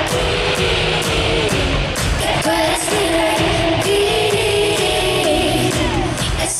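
Live pop music: a woman singing a melody into a microphone over a backing track with a steady beat.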